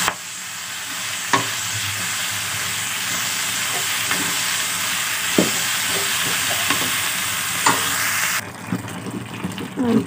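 Green beans, potatoes and tomatoes sizzling in oil in a metal pan while a metal spoon stirs them, with a few sharp clicks of the spoon against the pan. The sizzle drops away suddenly near the end.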